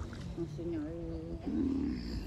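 A person's voice making a drawn-out, wordless sound that wavers in pitch, then breaks into a louder, rough growl-like sound near the end, over low water sloshing.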